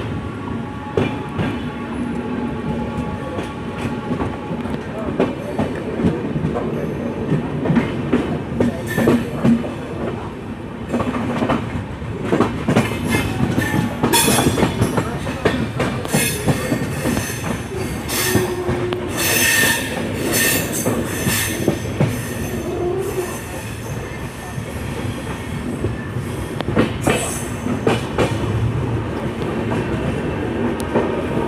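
Passenger coach of the Sarnath Express rolling along the track, heard from its open doorway: a steady rumble with wheels clicking over rail joints. Through the middle of the stretch come repeated high-pitched wheel squeals.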